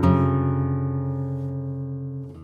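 1936 Santos Hernández flamenco guitar: one chord struck at the start and left ringing, slowly dying away.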